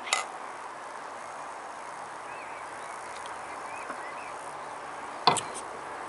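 Two stemmed beer glasses clinked together in a toast, a short bright ringing clink, then several seconds of quiet steady background hiss with a few faint chirps. About five seconds in comes a louder single knock as a glass is set down on the tabletop.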